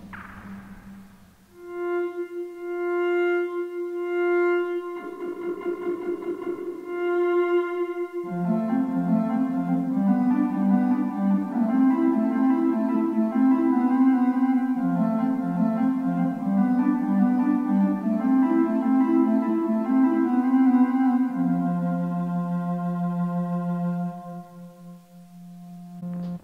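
Ondomo, a modern handmade Ondes Martenot, sounding pure electronic tones with added reverb. First a single held note swells and fades under the touch button that sets its loudness, then from about eight seconds in a melody of several lower notes is played on the keyboard.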